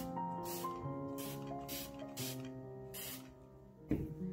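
A hand-pumped spray bottle of water misting onto a canvas: about five short hissing sprays in quick succession during the first three seconds, over soft background music with held notes.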